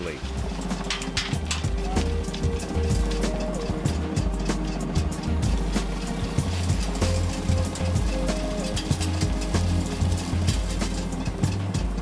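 Background music: held synth chords that change every second or two over a stepping bass line, with light percussion throughout.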